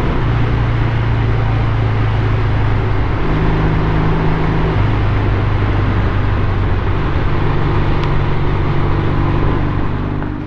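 A 1971 Triumph Trophy TR6C 650 cc parallel-twin motorcycle engine running under way on the road, mixed with wind and road noise. The engine note rises briefly about three seconds in, settles back near five seconds, then climbs slightly again toward the end.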